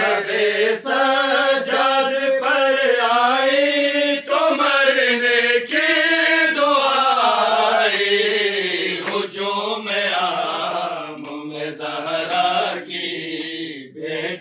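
Men chanting an Urdu noha, a Shia lament, in long drawn-out, wavering notes.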